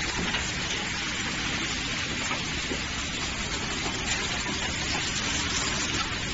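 Automated valve packaging machinery running: a steady hiss over a low hum, with no distinct strokes.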